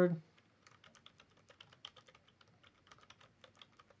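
Computer keyboard keys typed in a quick, uneven run of light clicks, entering a password; the keystrokes begin about half a second in.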